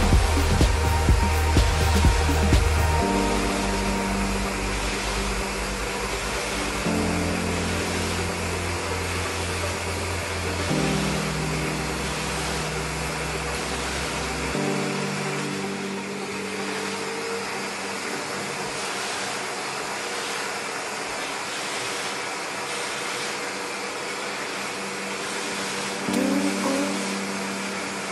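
A pop song with a stepping bass line, which drops out about halfway through, plays over the steady rushing of a Zepter Tuttoluxo vacuum cleaner running with its upholstery nozzle on a sofa.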